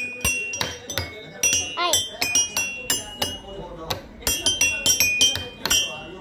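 Toy xylophone struck with two ball-headed mallets: many quick, uneven strikes on different bars, each note ringing briefly, with a short lull just before two-thirds of the way through.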